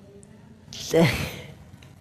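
A single breathy sigh about a second in, starting on a short spoken word and fading out, with quiet room tone before and after.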